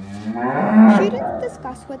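A cow mooing: one long moo that rises and then falls in pitch over about a second and a half.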